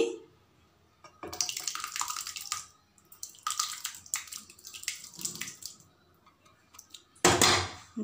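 Boiled whole urad dal and its cooking water being poured from a pot into a kadai of thick masala, splashing and sloshing in two spells, then a louder burst of noise near the end.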